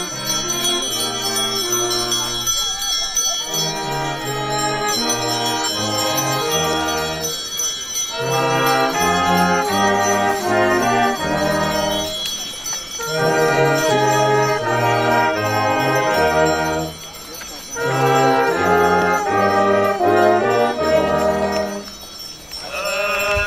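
Marching brass band of saxophones and tubas playing a tune in phrases of about five seconds with short breaks between them, the tuba bass moving in steady steps under the melody.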